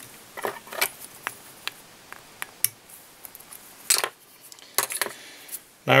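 Small fly-tying tools being handled at the vise: a dozen or so short, irregular metallic clicks and clinks.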